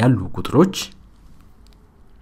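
A man's voice speaking for under a second, then a pause with only faint room hum and hiss.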